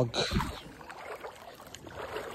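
Legs wading through muddy floodwater, the water sloshing and splashing with each stride. The loudest splash comes just after the start.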